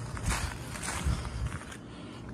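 Footsteps of a person walking, a few uneven steps over a steady low rumble.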